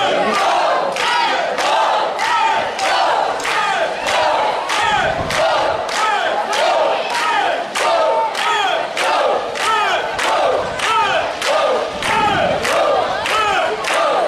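A group of young voices chanting a rhythmic cry in unison, with a sharp beat about twice a second.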